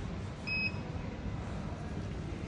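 A single short electronic beep from the air permeability tester's touchscreen panel, confirming a button press, about half a second in, over steady low background noise.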